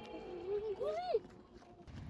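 A short wordless vocal sound from a person, rising then falling in pitch for under a second, followed by a quieter pause.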